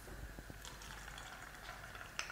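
Faint sizzling and bubbling of rice-flour vadas frying in hot oil, with a few small crackles in the first half second.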